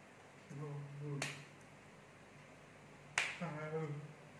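Two sharp finger snaps, about two seconds apart, made between short bursts of a man's speech.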